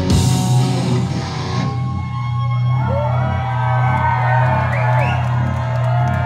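A death metal band's last chord and cymbal crash ring out and fade at the end of a song, leaving a steady low drone from the amplifiers. A few whoops from the crowd come in the middle.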